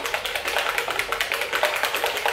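A small plastic bottle of La Roche-Posay Anthelios SPF 50+ Shaka Fluid sunscreen being shaken hard by hand, making a fast, even rattle. The bottle is being shaken to mix the fluid before it is applied.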